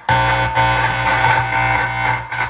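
Amplified electric guitar, a red Les Paul Junior-style kit guitar: one chord strummed just after the start and left to ring out, slowly fading.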